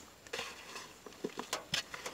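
A hand stirring damp torn-paper worm bedding inside a small container: a run of short rustles and crackles, the sharpest two a little past halfway.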